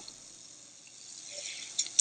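Faint hiss of an open telephone line with no one answering, with a couple of soft clicks near the end.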